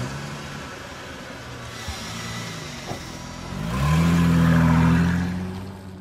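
Car engine running at idle, then revving up sharply about four seconds in, holding a louder, higher pitch and fading out near the end.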